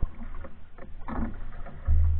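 Canoe sounds: light knocks of a wooden paddle against a canoe hull and water moving around the boats, with a loud low thump near the end.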